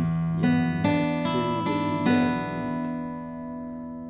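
Taylor AD22e acoustic guitar fingerpicked over an E chord shape: the low open E string rings under a run of single notes on the higher strings, about one every half second, and the notes fade out in the last second.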